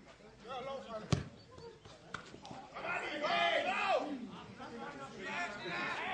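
A football kicked hard, one sharp thump about a second in, followed by voices calling out across the pitch.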